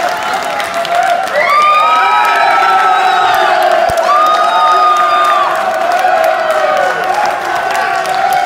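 Crowd cheering and whooping loudly, many voices shouting at once over scattered clapping.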